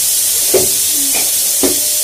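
Steady hiss of steam from a pressure cooker venting on the stove, with two brief knocks about half a second and a second and a half in.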